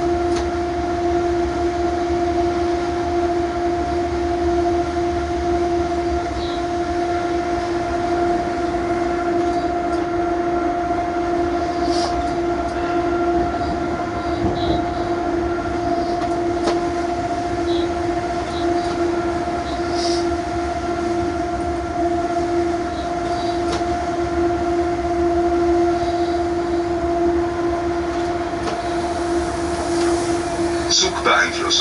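Cab of an electric freight locomotive under way: a steady hum with two clear constant tones over a low rumble, and a few faint light clicks.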